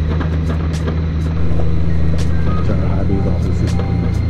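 Motorcycle engine running steadily while riding, heard from the rider's seat, getting a little louder about a second and a half in, with scattered sharp clicks.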